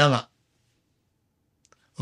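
A man's voice breaks off just after the start, then a pause of near silence. Two faint clicks come shortly before he speaks again.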